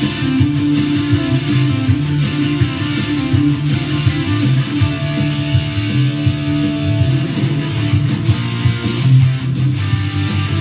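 Electric guitar, a Gibson Les Paul Classic gold top, played over a recorded 1980s rock band track with bass and drums.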